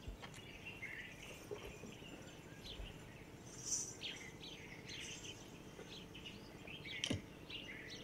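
Faint birds chirping in the open air, short chirps scattered through, one higher-pitched call a little before the middle; a single brief click near the end.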